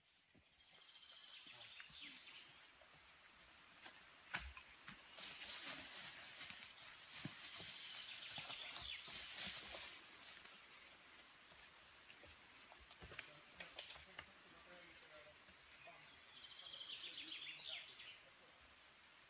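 Quiet woodland birdsong: short, quick trilled phrases about a second in and again near the end, with soft rustling and a few light knocks in between.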